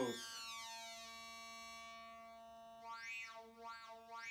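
Hard-sync oscillator in a modular synthesizer holding a steady, many-harmonic tone, its upper harmonics thinning about a second in. From about three seconds in, a bright peak glides up and back down three times as the sync sound is swept. Its flank-suppression circuit gives it a smooth sync sound.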